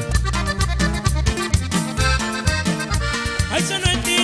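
Live norteño band playing an instrumental passage: button accordion carrying the melody over a twelve-string guitar, electric bass and drum kit keeping a steady, bouncing beat.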